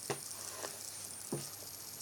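Quiet room with a few soft, short clicks from a hardback picture book being handled.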